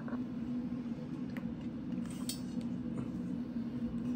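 A few light metallic clinks from an aluminium cylinder head and metal tools being handled, over a steady low hum.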